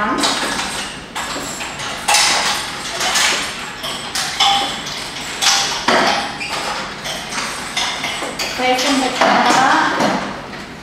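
Repeated knocks, taps and metallic clinks of Pilates reformers being handled and reset, with people talking and laughing over them.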